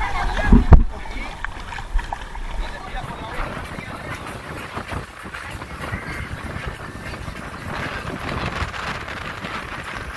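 Wind and water noise aboard a catamaran under way, with voices faint in the background. There is a loud thump against the microphone just under a second in.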